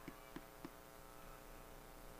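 Near silence: a faint steady electrical hum on the commentary line, with three faint ticks in the first second.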